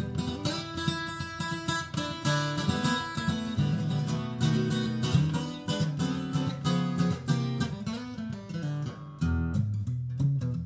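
Solo acoustic guitar strummed in a steady rhythm, an instrumental passage with no singing.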